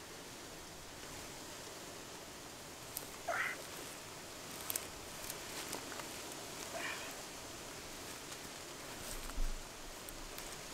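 Two brief rising animal calls, the second fainter, over a steady hiss, with a few faint clicks and a low thump near the end.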